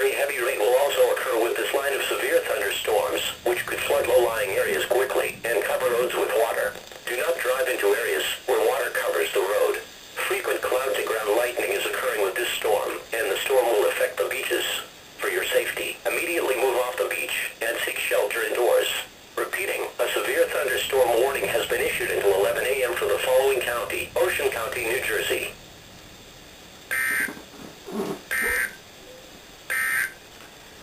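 A voice reading a National Weather Service weather radio broadcast, heard through a small radio speaker with a thin, narrow sound. The voice stops about 25 seconds in, leaving a low hiss and a few short blips near the end.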